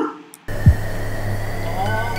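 Horror film score: a low droning hum with a thin steady high tone starts suddenly about half a second in, and a deep bass hit drops in pitch just after it.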